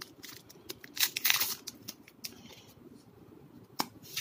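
Foil booster-pack wrapper crinkling in the hands as trading cards are slid out and handled. The loudest rustle comes about a second in, and a sharp click comes near the end.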